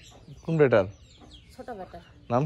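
Domestic chickens clucking. There is a louder falling call about half a second in and a few short, quieter clucks near the end.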